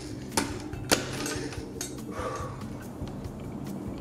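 Metallic clicks and knocks of a rear wheel's hub axle being forced into the too-narrow rear dropouts of a 4130 steel fixed-gear frame: the dropouts are spaced at 115 mm instead of the standard 120 mm. Two sharp clicks come about half a second apart near the start, then fainter knocks.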